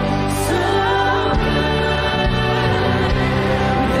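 Church worship music: a band playing with several voices singing together, a steady, continuous song with sustained bass notes that change every second or so.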